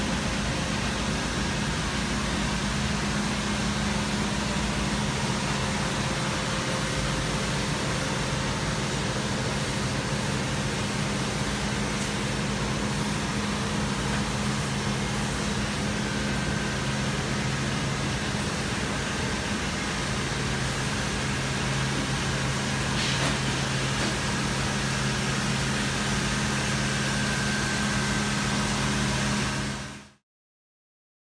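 Steady hum and whir of machinery and ventilation on a dry cleaning plant floor, with a low drone throughout.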